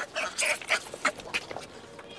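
Hanuman langur monkeys giving a quick, irregular series of short, sharp, high calls in the first second and a half, as the old leader's males are driven out of the troop.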